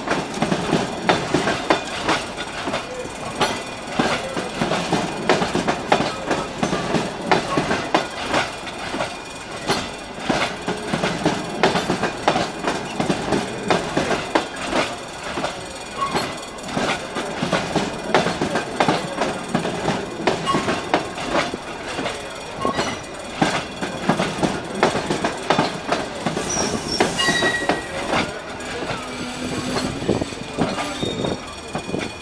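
Passenger coaches rolling slowly past: a steady, irregular stream of wheel clacks and rattles as the wheels run over rail joints and the level crossing. A brief high-pitched wheel squeal comes near the end.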